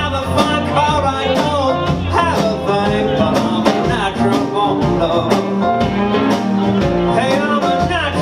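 Live blues band playing: an amplified harmonica, cupped against a microphone, plays a wailing solo over electric guitar, upright bass, piano and drums keeping a steady beat.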